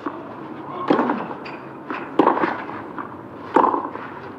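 Tennis ball struck by rackets in a rally on a clay court: three sharp hits, about 1.3 seconds apart.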